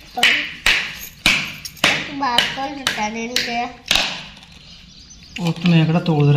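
Four sharp knocks in the first two seconds, with people talking around them.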